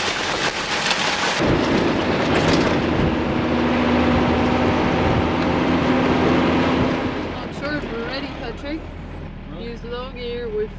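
Unimog truck's diesel engine and dirt-road noise heard from inside the cab while driving, first with jolting rattles and then as a loud steady drone with a low hum. Near the end it grows quieter as the truck slows, with voices over it.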